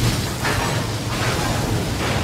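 Series soundtrack: a heavy rush of water pouring off a starship's hull as it is hoisted out of a harbour, with rain, over a steady low hum.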